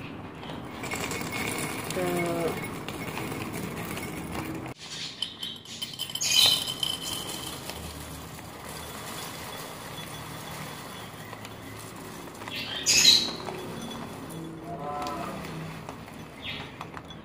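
Clear plastic bag of mixed parrot seeds and nuts crinkling as it is handled and tipped, with seeds rattling into a ceramic bowl; the loudest rustles come about six and thirteen seconds in. Two brief voice-like sounds, one about two seconds in and one near the end.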